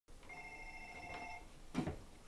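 A telephone ringing: one electronic ring of several steady tones sounded together, lasting about a second. A short, dull knock follows near the end.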